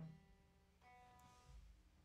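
Near silence, with a faint plucked guitar note ringing for about half a second a little under a second in.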